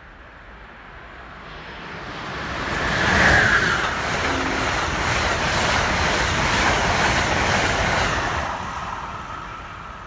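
Amtrak passenger train of stainless-steel Amfleet coaches passing through a station at speed: a rushing rumble of wheels on rail swells up, is loudest about three seconds in, holds for several seconds, then fades away near the end.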